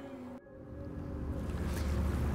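Speech-free outdoor background rumble, like wind or distant traffic, starting abruptly about half a second in and growing steadily louder.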